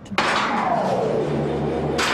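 Heavy mill machinery: a sudden loud metallic clash just after the start that rings on, with one tone sliding downward over a low steady hum.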